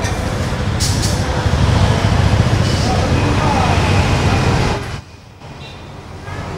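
Road traffic noise with a loud, low engine rumble that drops away suddenly about five seconds in.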